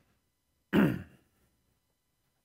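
A man clearing his throat once, a short, abrupt rasp with a low voiced grunt, lasting about half a second.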